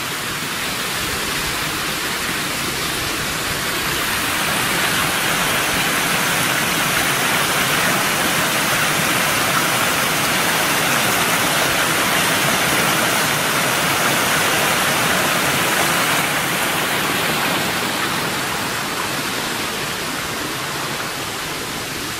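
A small stream cascading over rocks: a steady rush of water that grows a little louder through the middle and eases off toward the end.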